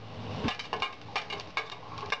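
Cumin seeds crackling in hot oil in a steel kadai, a rapid, irregular run of sharp pops with light metallic clinks.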